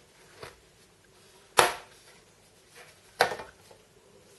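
The bottom cover of a white polycarbonate MacBook clacking as it is worked loose and lifted off: a faint click, then two sharp clacks about a second and a half apart.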